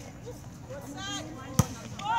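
A volleyball being hit during a rally: one sharp slap about one and a half seconds in, with players' faint voices before it.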